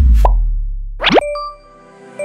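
End-screen jingle of sound effects: a deep bass boom fades over about a second and a half, then a quick rising pop-sweep about a second in leads into bright ringing chime notes.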